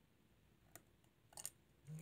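Faint small clicks as a phone camera module's press-fit connector is pried off a Samsung Galaxy S7 Edge motherboard with a thin wooden stick: one click a little under a second in, then a quick cluster of clicks about a second and a half in as the connector comes free.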